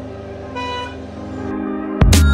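A vehicle horn toots briefly about half a second in, over steady background music.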